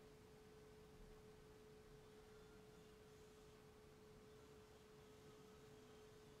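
Near silence: room tone with a faint, steady single-pitched tone running throughout.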